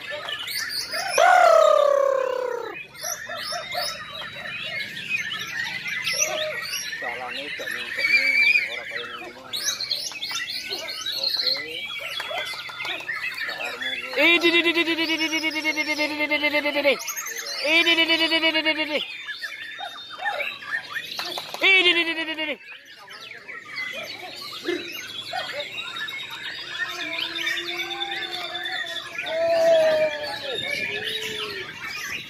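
Several caged white-rumped shamas (murai batu) singing at once, a dense mix of rapid chirps, trills and whistles, with a loud falling call about a second in. Loud drawn-out human shouts break in three times around the middle.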